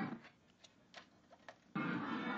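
Party music and crowd noise from a home video, heard through a TV speaker, break off a moment in, leaving near silence with three or four faint clicks, then come back suddenly near the end.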